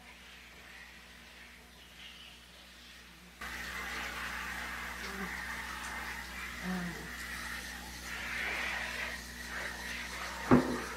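Handheld shower head spraying water over potted pothos plants and their coir poles in a bathtub. It is quiet for the first few seconds, then the spray starts abruptly, about three and a half seconds in, and runs steadily.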